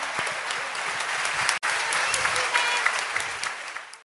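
Audience applauding with a few shouts mixed in, cutting out for an instant about a second and a half in, then fading out near the end.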